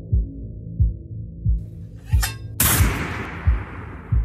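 Suspense film score: low heartbeat-like thuds about every two-thirds of a second over a sustained low drone, a short bright flourish just after two seconds, then a sudden loud hit of noise that dies away over the next two seconds.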